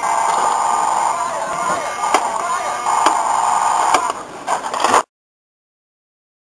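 Battery-powered toy robot playing electronic sound effects and a robotic voice through its small speaker, set off by pressing the button on its chest. Sharp clicks come about two and three seconds in, and the sound cuts off abruptly just after five seconds.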